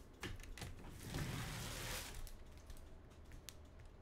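Faint handling of trading cards on a rubber table mat: a few light taps and clicks, with a short brushing slide about a second in.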